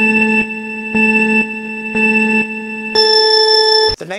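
Electronic countdown beeps: three short beeps a second apart, then one longer, higher beep that marks the start.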